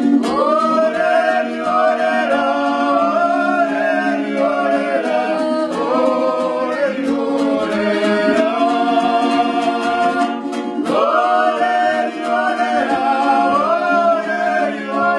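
A song: a voice singing a melody in long held phrases over a steady low accompaniment, with new phrases starting about six and eleven seconds in.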